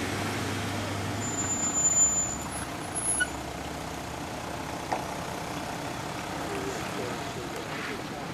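Toyota LandCruiser 100 series 4WD engine running low and steady as it crawls down a steep rock ledge. A few short knocks come around two, three and five seconds in, and a brief thin high squeal comes a little after one second.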